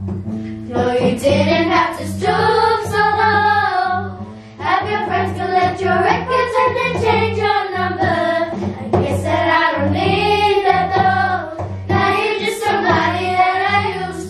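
A group of children singing a song together to a strummed acoustic guitar, phrase after phrase with short breaths between.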